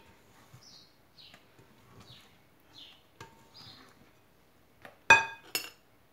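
Faint scraping of a whisk stirring thick chocolate cookie dough in a glass bowl, with a few small clicks, then two ringing clinks about half a second apart near the end as a metal utensil knocks against a bowl.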